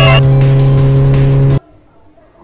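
Steady low hum of a cartoon car's engine sound effect, cutting off abruptly about one and a half seconds in.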